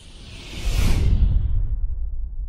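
Cinematic whoosh sound effect for a logo animation: a rushing sweep that swells to its peak about a second in, over a deep booming rumble that lingers and fades.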